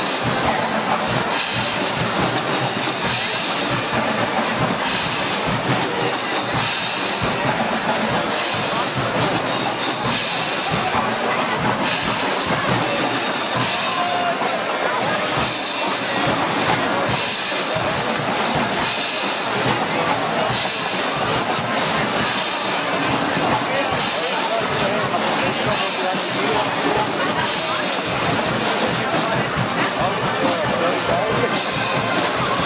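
Guggenmusik band playing live: loud brass with sousaphones, trombones and trumpets over a driving drum beat with cymbals.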